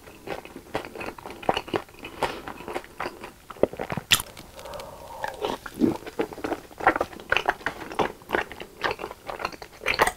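Close-miked chewing of a mouthful of spicy tteokbokki: a run of wet mouth clicks and smacks, several a second.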